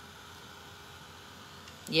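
Heat embossing tool's fan running steadily, a faint even hiss with a slight whine, as it heats a metal leaf embellishment.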